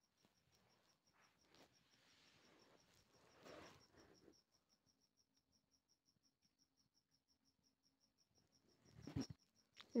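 Near silence with a faint, steady cricket chirping at an even fast pace, about five chirps a second. A soft brief rustle comes about three and a half seconds in, and a few light clicks near the end.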